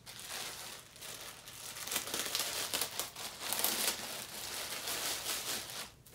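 Clear plastic packaging crinkling and rustling as it is handled and opened, a dense run of crackles that is busiest in the later part and stops just before the end.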